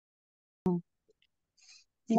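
A single short hum-like vocal sound from a person on a video call, about two-thirds of a second in, coming out of silence.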